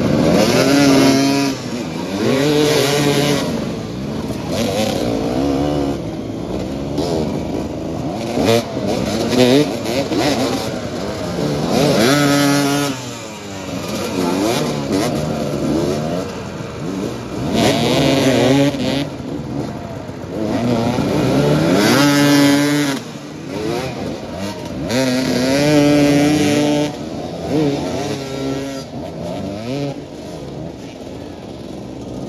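Several motoball motorcycles revving and accelerating on the pitch, their engines rising and falling in pitch in repeated bursts every few seconds, with overlapping bikes at different revs.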